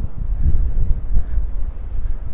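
Wind buffeting the microphone: a loud low rumble that surges and drops unevenly.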